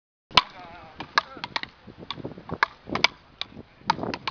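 Wooden beach-racket paddles striking a small ball in rapid rallies: about a dozen sharp, irregular cracks. The loudest comes just after the start.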